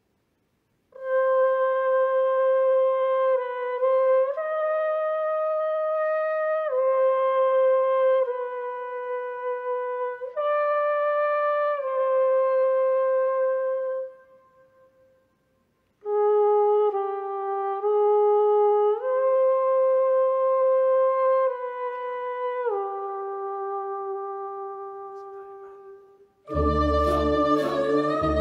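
A single a cappella voice imitating a wind instrument, playing a slow solo melody of held notes that step up and down. It comes in two phrases: the first starts about a second in and fades out, and the second begins a couple of seconds later and fades near the end.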